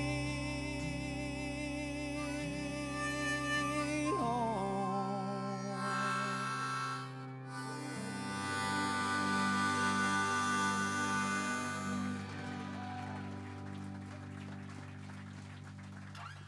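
Live country band playing the end of a song: fiddle with vibrato over electric and acoustic guitars and bass, moving into a long held final chord that slowly dies away.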